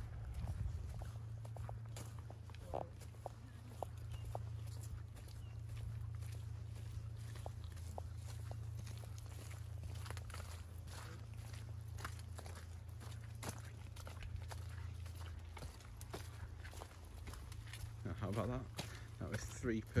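Footsteps on a muddy woodland path, heard as scattered irregular soft clicks over a steady low rumble. A voice speaks near the end.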